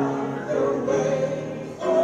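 A hymn sung by a group of voices with piano accompaniment, holding long notes of the melody.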